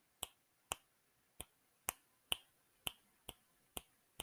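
Finger snapping: eight short, sharp snaps at about two a second, with quiet gaps between them.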